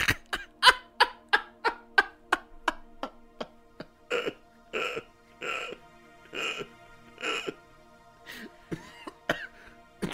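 Music: a quick run of sharp, evenly spaced notes, about three a second, over a held background tone, followed by a slower series of short noisy bursts.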